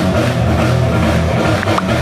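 Live rock band playing loudly, with electric guitar, drum kit and keyboard.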